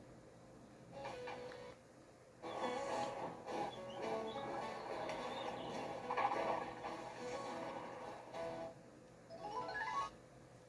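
DVD menu transition music played through a TV speaker and heard faintly across the room, starting a couple of seconds in and ending with a short rising sweep.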